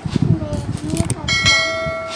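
Subscribe-button animation sound effect: a click, then a bright notification-bell ding about a second in that rings on steadily.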